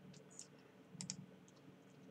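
Near silence with a few faint clicks from operating a computer, two of them close together about a second in.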